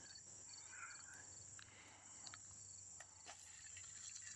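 Near silence: faint outdoor ambience with a steady high hum and a row of faint short chirps in the first second or so, like insects such as crickets, plus a few faint clicks.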